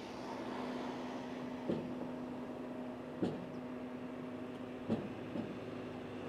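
A steady low hum with four short, soft knocks, the first about a second and a half in and the last two close together near the end.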